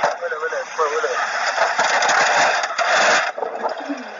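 Voices talking over a loud rushing noise, sounding harsh and distorted like a radio; the noise cuts off suddenly a little over three seconds in.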